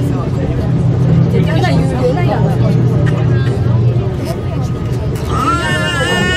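Aerial ropeway cabin descending on its cable toward the valley station, a steady low hum with passengers' voices over it. About five seconds in a high, held pitched sound begins.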